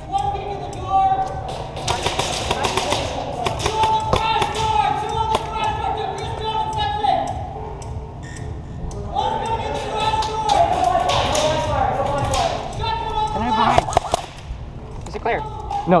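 Airsoft gunfire heard as rapid bursts of sharp clicks and knocks, a couple of seconds in and again near the end, with players shouting in the background.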